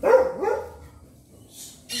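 A dog barking off to the side, a loud double bark right at the start. A shorter, sharp sound follows near the end.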